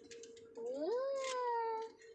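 A child's drawn-out vocal sound without words, sliding up in pitch and then held steady for over a second.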